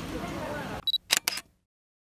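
Low hubbub of the market, then a camera's short high focus beep followed by quick shutter clicks about a second in.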